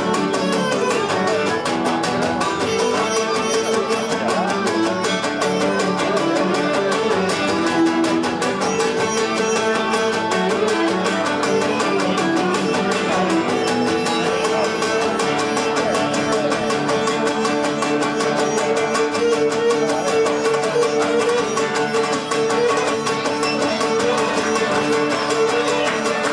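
Cretan lyra bowed in a continuous melody over plucked lutes playing a steady accompaniment: an instrumental passage of Cretan folk music.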